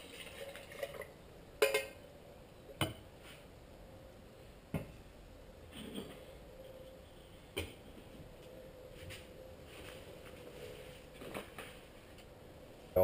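A small metal pot and its lid being handled on a table: a handful of separate metal clinks and knocks, about five, spaced a couple of seconds apart with quiet between.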